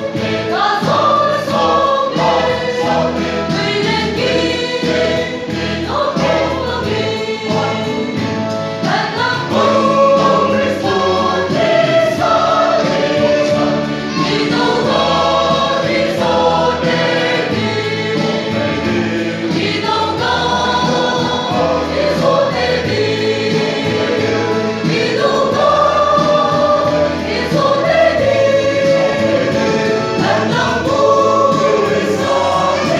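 Mixed choir of men and women singing a hymn together, with long held notes and steady phrases.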